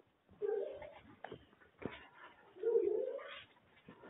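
A pigeon cooing twice, two separate coos about two seconds apart, with a few soft clicks between them.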